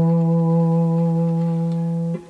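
Fretless three-string cigar box guitar played with a slide: a single E note on the middle (D) string at the 2nd fret, ringing steadily with no other strings sounding.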